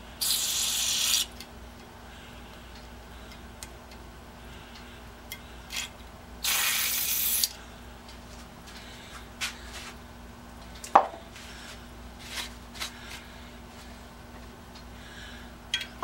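Aerosol can spraying into a freshly tapped hole in two bursts of about a second each, the first right at the start and the second about six and a half seconds in. Light clicks follow, with one sharp metal knock about eleven seconds in.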